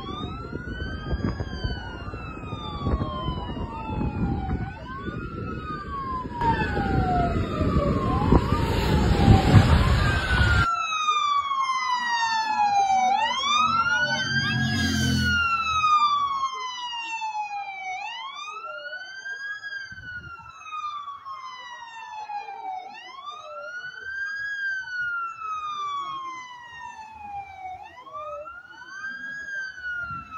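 Emergency-vehicle sirens wailing, each cycle rising and then sliding down in pitch every two to three seconds; two sirens overlap for the first third. A heavy low rumble lies under them, loudest about nine seconds in, and cuts off suddenly at about eleven seconds, leaving a single siren.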